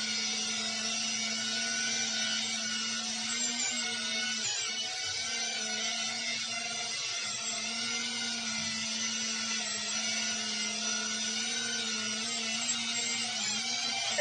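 Small FPV racing quadcopter hovering: its brushless motors and propellers give a steady high whine, the pitch wavering only slightly as it holds position and drifts.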